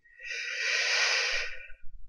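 One long audible breath from a person, lasting about a second and a half.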